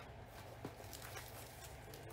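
Faint handling noise, a light rustle with a couple of small ticks, as a handbag strap in plastic wrapping is picked up.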